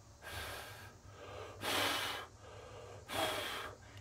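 A person's breaths close to the microphone: three breathy puffs, the middle one the longest and loudest.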